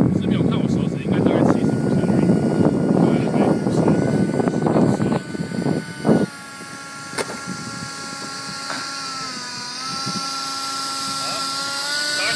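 Steady whine of a model jet's ducted fan as it taxis, several pitches at once, dipping briefly in pitch and coming back up late on. A loud rushing noise covers it for the first half and cuts off suddenly about halfway.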